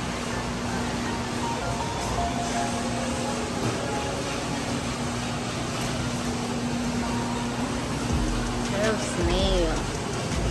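Busy shop ambience: indistinct background voices and music over a steady hum, with voices briefly more prominent near the end.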